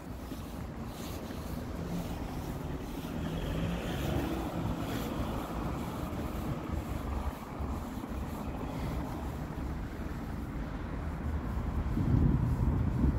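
Outdoor street ambience: a steady low rumble of wind on the microphone over a faint hum of distant traffic, with no distinct events.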